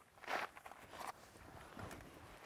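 Faint rustling and shuffling of a person stepping into a car and settling into its bucket seat: one short rustle about a third of a second in, then softer shuffles.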